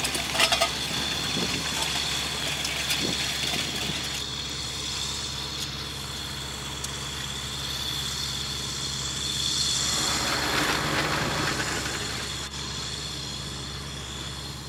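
Farm tractor's diesel engine running steadily as it pulls a tillage implement across dry ground, with a few clicks near the start.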